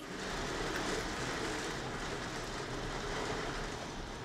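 Steady rain falling: an even, unbroken hiss of rainfall.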